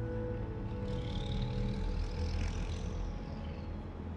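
Street traffic: a steady low rumble, with a vehicle passing from about one to three seconds in, as background music fades out at the start.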